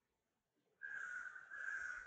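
Near silence, then a bird starts giving harsh, evenly repeated calls about a second in, each call a little over half a second long with short gaps between.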